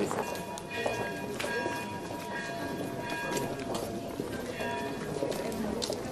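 Many footsteps of a group walking on cobblestones, with murmured voices and music holding long steady notes behind them.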